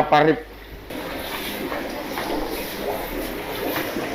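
Steady bubbling and trickling of aquarium water and aeration, with faint voices underneath. A short spoken word opens it.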